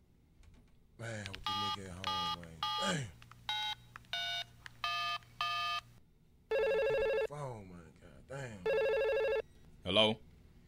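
Telephone keypad tones dialing a number, seven short paired-tone beeps, followed by the phone line ringing twice.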